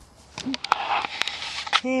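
Loud rustling of hands handling the camera close to its microphone, with several sharp clicks, as a button is sought; a woman's voice begins near the end.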